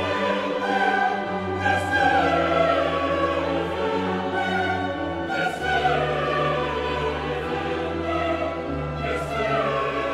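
Choir and orchestra performing the Credo of an 18th-century Bohemian choral mass: the voices hold chords over sustained bass notes, and the melodic lines move and fall.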